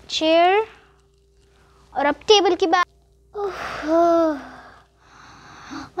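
A girl's wordless vocal sounds: a short rising hum, a quick broken run of voiced sounds, then a strained grunt with breathy exhales, as she plays at the effort of lifting a heavy toy table.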